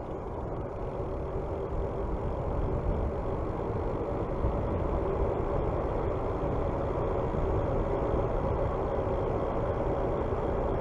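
Wind rushing over the microphone with the rumble and hum of bicycle tyres rolling on asphalt, growing gradually louder as the ride goes on.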